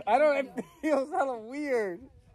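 A man's voice making loud, wavering whines and groans that slide up and down in pitch, with a few broken words.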